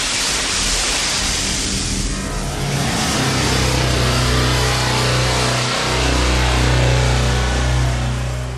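Logo intro music and sound design: a wide whooshing wash that gives way, about three seconds in, to a deep sustained bass drone with a brief dip near six seconds.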